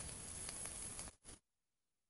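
Faint, even sizzling hiss of an e-cigarette atomizer coil firing on a repaired eGo USB passthrough, the passthrough now powering it again. The hiss cuts off suddenly about a second and a half in.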